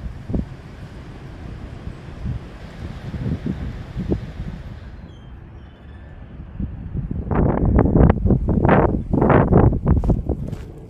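Wind buffeting the microphone, a low rumble. From about seven seconds in, footsteps crunching through dry grass and brush, several steps a second and louder than the wind.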